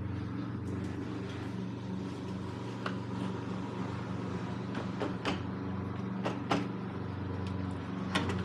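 A few sharp clicks and knocks of plastic and metal as a car's front lock carrier is wiggled forward off its mounts, the clearest between about three and six and a half seconds in, over a steady low hum.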